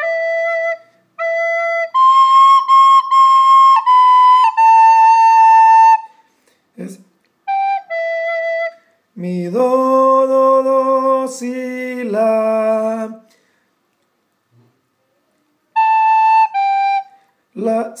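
A soprano recorder playing a slow melody one note at a time, several notes repeated on the same pitch and some held for over a second, with short gaps between phrases. In the middle a lower man's voice holds two long notes of the tune, and the recorder comes back with two more notes near the end.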